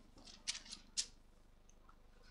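Faint rustle and flick of thin Bible pages being turned, a few short crisp flicks about half a second and a second in.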